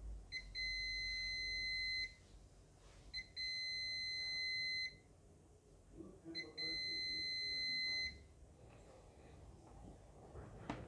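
Uni-T UT61B+ digital multimeter's continuity buzzer giving three steady, high-pitched beeps of under two seconds each, about a second apart, each opening with a short chirp: the test lead tips are being touched together, closing the circuit.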